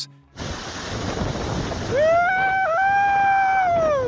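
Strong wind rushing over the microphone, mixed with the noise of piled ice sheets shifting. About halfway through, a man gives a long, high excited whoop that rises, holds with a brief break, and falls away at the end.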